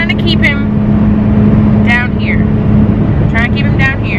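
Steady engine and road drone inside the cab of a moving truck, with a constant low hum. Short snatches of a woman's voice come over it.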